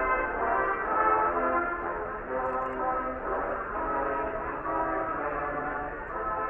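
A brass band playing a traditional German Christmas carol, with long held chords.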